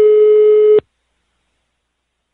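A single steady telephone line tone, about a second long, that cuts off suddenly: the line tone heard after a phone call ends.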